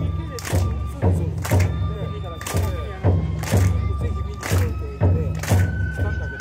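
Shishimai lion-dance accompaniment of taiko drum and bamboo flute. The drum beats three strokes half a second apart, then rests one beat, repeating every two seconds, under long held flute notes.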